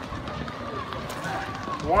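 Outdoor background noise with faint distant voices, then a man's voice starting to count near the end.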